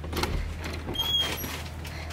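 Wooden cabin door being opened, with light clicks from the knob and latch, and a brief high tone about halfway through.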